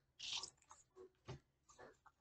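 Tarot cards being shuffled and handled: a few faint, short, crisp card sounds, the clearest about a quarter second in.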